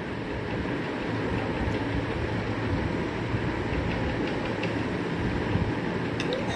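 A steady noise with a faint low hum underneath, even throughout with no clear events.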